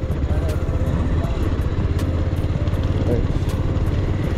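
Motorcycle engine running steadily at low speed while riding over a rough, stony dirt road, with occasional sharp clicks.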